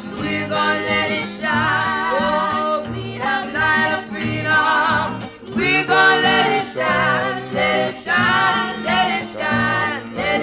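Music: a singing voice with strong vibrato over instrumental accompaniment with steady low notes.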